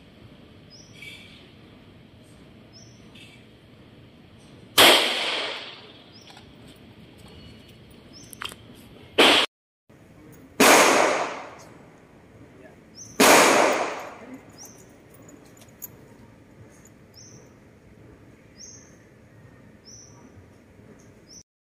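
Handgun fired four times, with sharp reports about five, nine, ten and a half and thirteen seconds in, each trailing off in about a second of echo.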